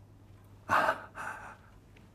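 A person's breath: two short, audible breaths about a second in, the first the louder.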